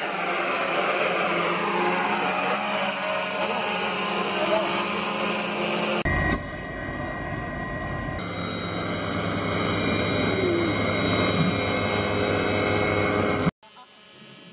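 Homemade hexacopter's six brushless motors and propellers running, a steady whine over a rush of propeller air, in spliced clips that cut about six and eight seconds in; the sound drops away suddenly shortly before the end.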